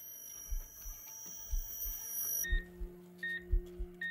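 Electronic beeping like a hospital heart monitor: short high beeps about every three-quarters of a second from about halfway in, over soft low pulses about once a second. A steady high tone runs through the first half and stops as a low hum begins under the beeps.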